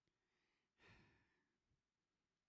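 Near silence, broken about a second in by one faint, short breath or sigh close to a handheld microphone.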